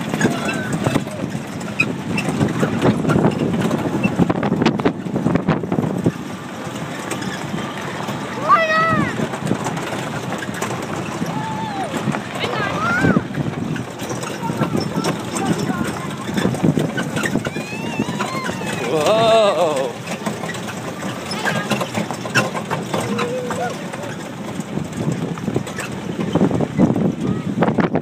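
A cow-painted barrel train rolling over a dirt track: a steady low rumble with knocks and rattles from the wheels and cars. Wind noise on the microphone, and children's voices rising and falling at times, loudest about a third of the way in and again past the middle.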